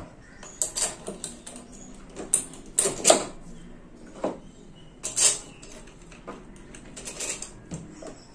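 Scattered clicks and knocks from a wall fan's wire guard and parts being handled, irregular and sharp, the loudest about three and five seconds in.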